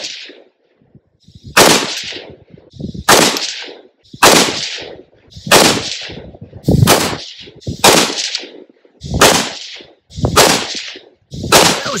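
Bear Creek Arsenal .308 AR-10 semi-automatic rifle firing nine shots of steel-cased Tula ammunition, one about every second and a half, each shot followed by a short echo. It cycles each round without a malfunction.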